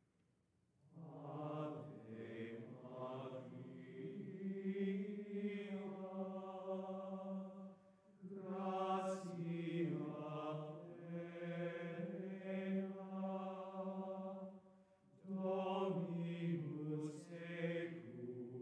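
Choir singing a slow, chant-like melody in long phrases, with short breaks for breath about eight and fifteen seconds in. The singing begins about a second in.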